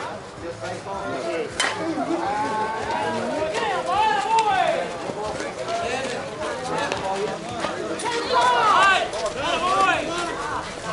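Several people calling and shouting over one another, loudest near the end. A single sharp crack sounds about a second and a half in.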